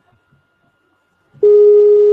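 A single loud, steady electronic call tone, about a second long, starting about a second and a half in. It is a Skype call tone as a call to Skype's test-call service connects.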